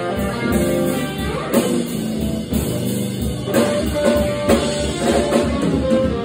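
Live band playing: electric guitar over a drum kit.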